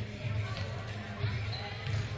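Volleyballs being hit and bouncing on a hardwood gym floor during warm-up, a few sharp smacks echoing in a large hall, the clearest near the end, over players' chatter and a steady low hum.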